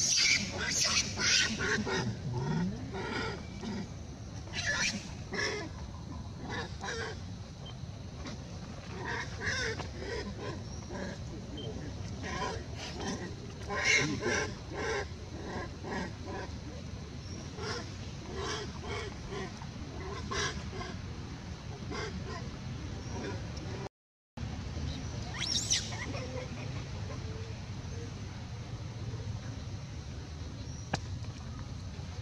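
Macaques calling: short, repeated squeaks and squeals from a baby and its mother, loudest in the first few seconds and again about halfway through.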